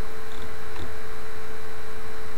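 Steady electrical hum in the recording: a constant low drone with a steady higher tone above it, unchanging throughout.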